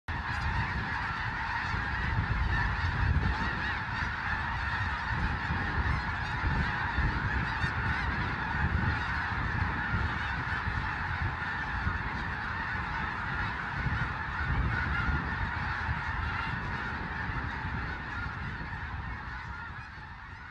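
A huge flock of snow geese calling all at once, a dense unbroken mass of honking that eases off slightly near the end.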